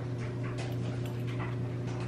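A steady low electrical hum, like an appliance motor, with faint scattered clicks over it.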